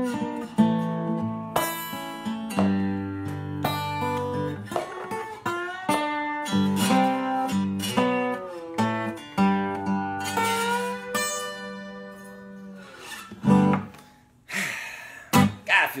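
Acoustic guitar played with a slide, picking a slow instrumental passage with notes that glide between pitches. The playing winds down and fades out about thirteen seconds in.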